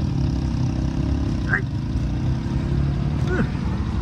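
Hero XPulse 200 motorcycle's single-cylinder engine idling steadily.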